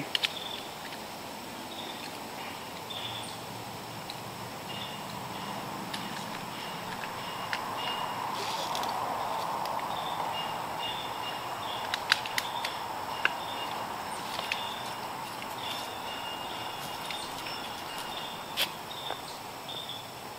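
Outdoor background hiss with faint, repeated high chirps. A few sharp clicks and rustles, most of them in the second half, come from rope and climbing hardware (tether rope, grigri, carabiners) being handled.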